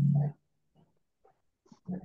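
A person's voice over a video call: a held, steady-pitched hum dies away in the first moment. Near silence follows, then a long drawn-out "um" begins just before the end.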